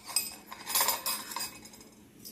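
Metal kitchen utensils clinking against bowls and dishes: a handful of short, sharp clinks, most of them bunched about a second in.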